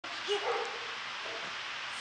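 A dog making two short vocal sounds about a third and half a second in, and a fainter one later, over a steady background hiss.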